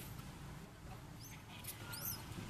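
A few faint, brief high-pitched animal squeaks over a low background rumble: one a little after a second in, and a quick cluster near the end.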